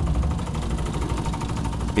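Pickup truck engine running, a steady low rumble.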